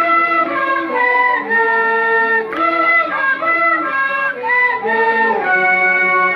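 Several cane flutes playing a traditional Andean melody together, in held notes that step from pitch to pitch with more than one note sounding at once.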